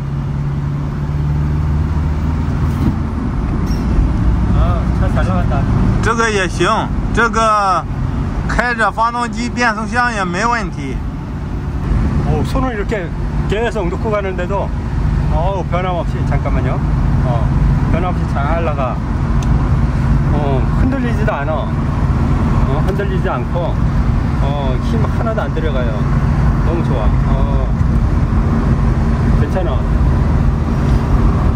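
Used Ford Transit van driving at road speed, its engine and road noise heard from inside the cab as a steady low drone. The van runs without shaking, and the seller judges the engine and gearbox to be fine.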